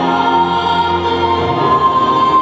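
Choral music of long, held chords, a high sustained note coming forward in the second half.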